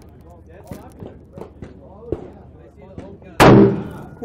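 A single shot from a Winchester XPR bolt-action hunting rifle about three and a half seconds in. It is a sharp, loud report that echoes and dies away over about half a second.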